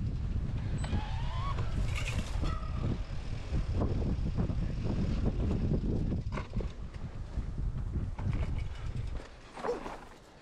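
Strong wind buffeting the microphone, a steady low rumble, with scattered knocks and rattles throughout and a brief wavering squeal about a second in.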